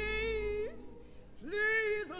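A solo female gospel voice singing two held notes. The first ends with an upward slide, and after a short break the second slides up into place about a second and a half in.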